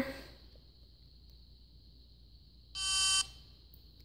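Motorola StarTAC dual-band flip phone giving a single short electronic beep as it powers on, about three seconds in, after near silence.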